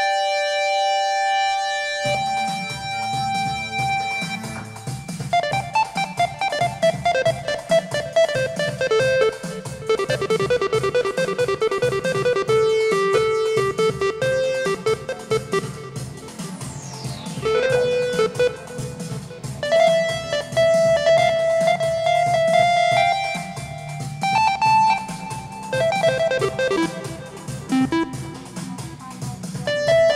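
Roland Fantom 7 synthesizer played live on one of its Scene patches. A held chord gives way about two seconds in to a bass line under a busy melodic lead, with a falling pitch glide about halfway through.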